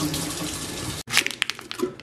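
Kitchen tap running, the water splashing over a plastic packet of frozen acai held under it and into a stainless steel sink. The water cuts off abruptly about a second in, followed by a few sharp clicks and taps of plastic being handled.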